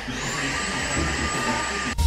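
A household vacuum cleaner running steadily: an even rushing noise with a thin, steady whine.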